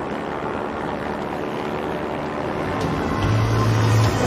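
Steady drone of an aircraft's engines heard from inside the cabin, growing louder near the end as a low steady hum comes in about three seconds in.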